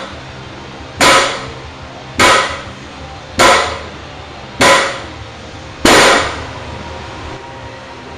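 Loaded barbell with cast-iron plates dropped back onto a plywood lifting platform at the end of each Pendlay row: five clanging impacts about a second apart, each ringing briefly.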